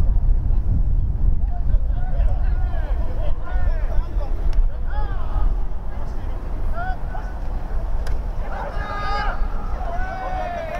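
Wind buffeting the microphone in a steady low rumble, with distant shouts from football players on the field: short scattered calls, then a burst of louder yelling about nine seconds in as the play is run.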